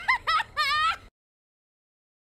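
A woman's shrill, high-pitched cackling laugh in several quick bursts, cut off suddenly about a second in.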